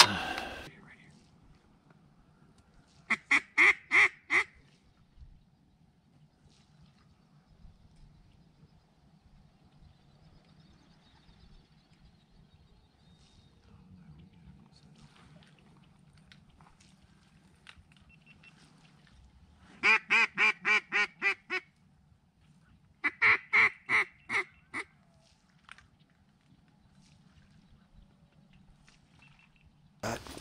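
Mallard duck call blown in three runs of loud, evenly spaced quacks: about five notes a few seconds in, then runs of about eight and six notes about two-thirds of the way through, calling to passing mallards.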